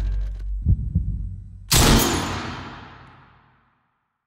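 Film sound design: two low heartbeat-like thumps in quick succession, then one loud sudden hit whose echoing tail fades away over about two seconds into silence.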